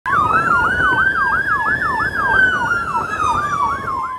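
Emergency siren of an ambulance-service rescue motorcycle sounding two patterns at once: a fast yelp sweeping up and down about three times a second over a slow wail that rises for about two seconds and then falls. Road and engine noise run underneath.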